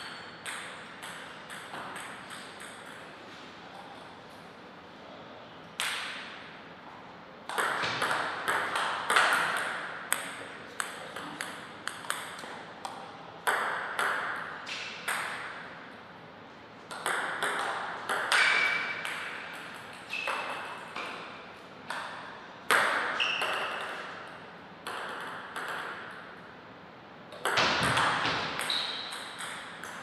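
Table tennis ball being hit back and forth in several short rallies: quick sharp clicks of paddle strikes and table bounces, each rally lasting a second or two, with pauses between points.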